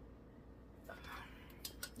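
Faint handling noise of a fallen book holder being set back up: a soft rustle about a second in, then a few light clicks near the end.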